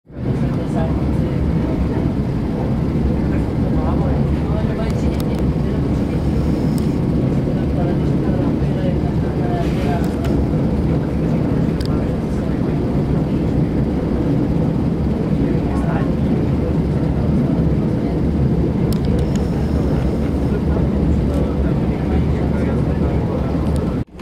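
Inside a small diesel railcar under way: a steady, loud, low rumble of the engine and running gear, with a few brief clicks scattered through it.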